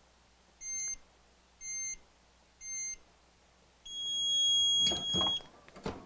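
Hotronix Fusion heat press timer beeping: three short beeps about a second apart, then a louder, longer beep marking the end of the 11-second press cycle. Near the end, a short clatter as the press is opened.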